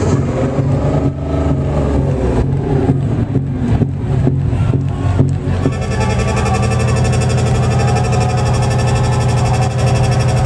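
Loud live electronic dance music from a festival sound system, heard from within the crowd, with a synth sweep rising and falling in the first two seconds. About six seconds in, the sound cuts abruptly to a different passage with a steady buzzing tone.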